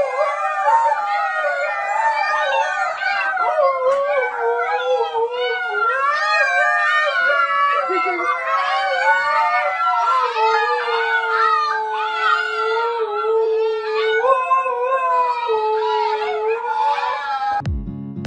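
A dog howling in one long unbroken run: the pitch wavers up and down for the first half, then settles into long, steady held notes, and cuts off suddenly shortly before the end.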